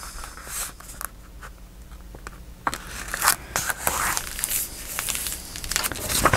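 Sheets of paper rustling and sliding against each other and over a cutting mat as they are handled, in short scattered bursts, quieter in the first half.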